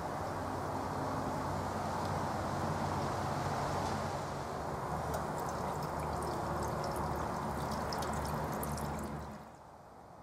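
Steady fizzing and bubbling of liquid from an aluminium anodizing bath in sulphuric acid electrolyte under charger current, with a low hum underneath. It fades away near the end.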